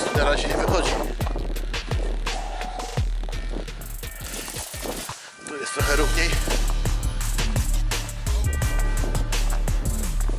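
Footsteps crunching over frozen, clumpy ploughed soil, with wind rumbling on the microphone and dropping out briefly in the middle. From about the middle on, the metal detector gives steady electronic tones.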